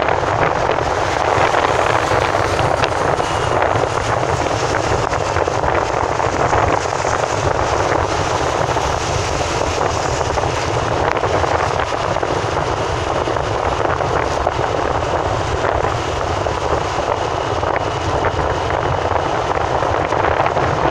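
Steady rushing noise of a car driving along a highway, heard from inside the cabin: tyre and wind noise at an even level, with no distinct events.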